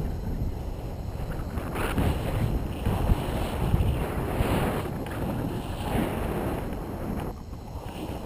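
Wind rushing over an action camera's microphone during a tandem paraglider flight, a rough low buffeting that swells in gusts.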